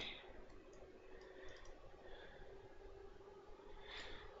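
Near silence: a few faint computer mouse clicks in the first half, over a faint steady hum.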